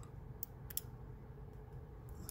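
A few faint, sharp clicks of a lock pick working the first pin inside an Abus EC75 brass dimple padlock.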